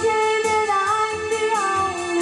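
A woman singing long sustained notes, with instrumental backing under the voice.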